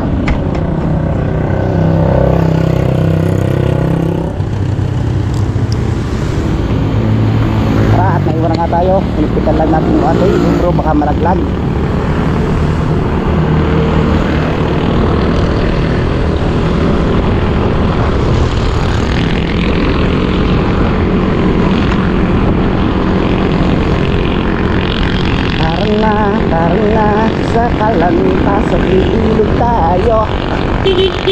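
Small motorcycle's engine running on the move, its note shifting up and down with the throttle, over road and wind noise.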